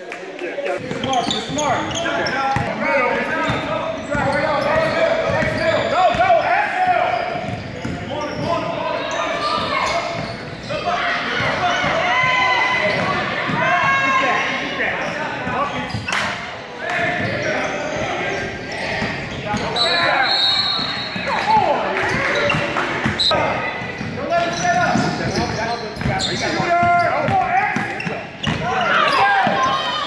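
Echoing gym sounds of a basketball game: a basketball bouncing on the hardwood court amid indistinct shouting and chatter from players, coaches and spectators.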